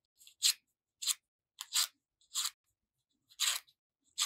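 Paper flower petals being curled with a scissor blade: a series of short, dry papery scrapes, about six in four seconds, with pauses between strokes.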